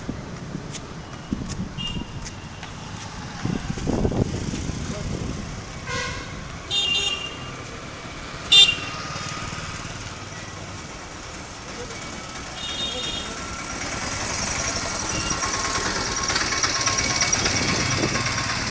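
Street traffic: several short vehicle horn toots, the loudest about halfway through, over a steady background of engines. Motorcycle engines grow louder near the end.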